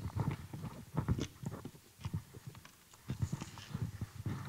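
Irregular soft knocks and clicks of handling noise on a microphone as it is picked up and moved between speakers.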